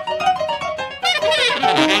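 Free-improvised jazz from a woodwind and piano duo: a reed instrument plays fast, jagged runs of quickly changing notes over piano.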